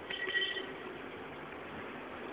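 Steady outdoor background noise, with a short high tone in the first half second.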